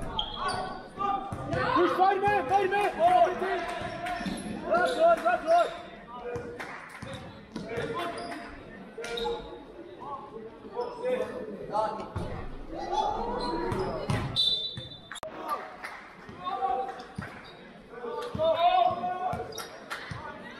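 Basketball game in an echoing sports hall: a ball bouncing on the court amid players' and spectators' shouts, with a brief steady high tone about three-quarters of the way through.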